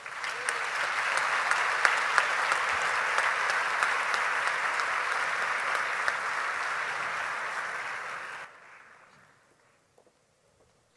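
A large auditorium audience applauding: dense, steady clapping that drops off sharply about eight and a half seconds in and then fades to near silence.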